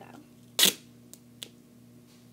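Duct tape pulled off the roll with one short, sharp rip about half a second in, followed by two faint clicks of handling.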